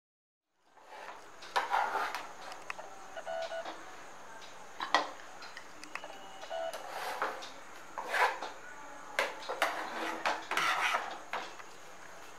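Scattered light clinks and knocks of crockery and utensils at irregular times, starting about a second in.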